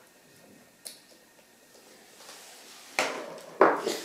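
Handling noises from laptop screen disassembly: a faint click about a second in, then two short, louder knocks and scrapes near the end as the screwdriver and display panel are handled.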